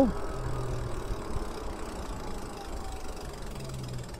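Steady wind and road noise from an electric bike being ridden along a paved street, with a faint whine slowly falling in pitch.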